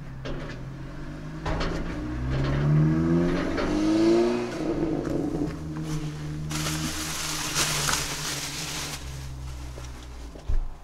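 A motor vehicle's engine runs with a steady low hum, and an engine rises in pitch as it accelerates about two to four seconds in. Near the end a loud rushing hiss comes and goes.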